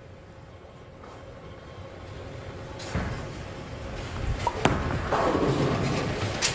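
Bowling ball released onto the wooden lane with a thud about three seconds in, then rolling down the lane, its rumble growing steadily louder as it nears the pins.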